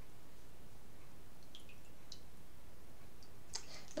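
Tarot cards being handled on a tabletop: a few faint, scattered soft clicks over a steady low background hum, with a short breath near the end.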